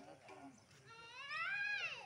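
A single animal call, about a second long, starting about a second in; its pitch rises and then falls.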